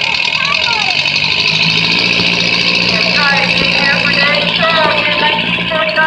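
Oliver 66 tractor's four-cylinder engine working under load as it pulls a weight-transfer sled: a loud, steady drone that settles onto a held note about a second and a half in. Voices talk over it.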